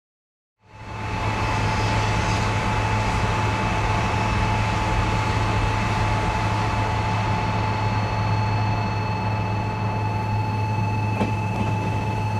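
Meitetsu electric trains, a 2000 series μSKY unit in front, running slowly through a station: a steady low rumble with a constant thin electric whine. The sound starts suddenly about half a second in, and near the end there are a faint click or two of wheels over rail joints.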